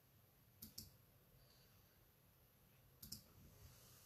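Near silence: room tone with two faint pairs of sharp clicks, one just under a second in and one about three seconds in.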